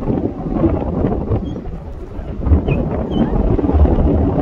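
Wind buffeting the phone's microphone: a loud, uneven low rumble that swells about two and a half seconds in and again near the end.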